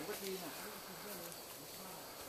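A steady insect buzz, with quiet talking in the first half.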